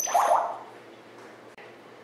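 African grey parrot giving a short loud call, about half a second long, right at the start; it opens with a sharp high click.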